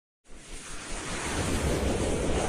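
Whooshing noise of an animated title intro, starting about a quarter second in and building steadily louder.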